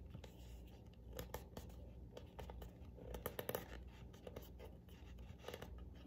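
Faint handling noises: scattered small clicks and scratches, busiest around the middle, as a peeled sticker is positioned and pressed into place.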